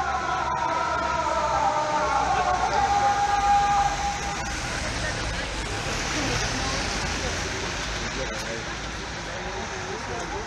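A muezzin's call to prayer (azan): one wavering sung phrase with long held notes that fades out about four seconds in. Beneath it and after it, the steady hubbub of a busy street with low traffic rumble.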